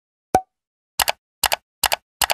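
Animated end-screen sound effects: a single pop about a third of a second in, then quick double clicks of a mouse-click effect repeating about every 0.4 s from a second in.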